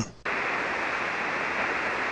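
Steady hiss of band static from a ham radio receiver on 40-meter SSB, coming in about a quarter second in after a brief silence.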